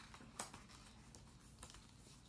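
Near silence with a few faint clicks, one about half a second in and a weaker one near the end, from a large hardcover picture book being closed and handled.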